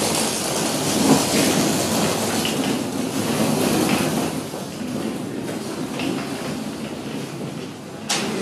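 Dense, steady rumbling noise with a clattering texture, loudest over the first few seconds and easing a little after about five seconds.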